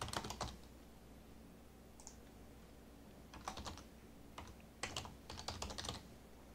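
Faint computer keyboard typing in short flurries of keystrokes: one flurry at the start, a pause, then more flurries from about three and a half seconds in and again near the end.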